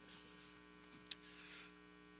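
Near silence: a faint steady electrical hum, with one short click a little past the middle.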